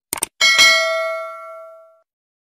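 Subscribe-button sound effect: a quick double mouse-click, then a bright notification-bell ding that rings out and fades away over about a second and a half.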